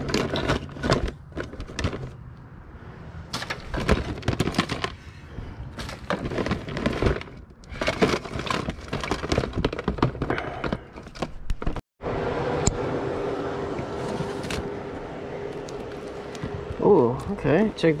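Electrical cords and cables rattling and clattering against each other and a plastic storage tote as they are rummaged through and pulled out, irregular clicks and rustles for about twelve seconds. After an abrupt cut, a steady hum runs to the end.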